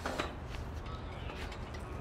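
Outdoor background noise with a steady low rumble, and a faint "wow" at the very start.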